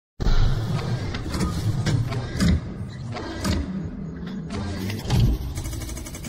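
Intro sting for an animated logo reveal: music with heavy bass and a string of sharp mechanical hits, the loudest near the start and just after the five-second mark.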